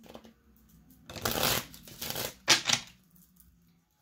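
A deck of cards being shuffled by hand: a run of shuffling about a second in, then two short, sharper bursts, the second the loudest.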